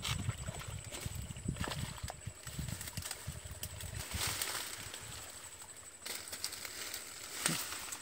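A hoe chopping and scraping into damp soil on an irrigation channel bank: a few soft knocks and scrapes over a low, irregular rustle.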